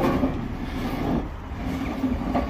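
An engine running with a low, steady rumble.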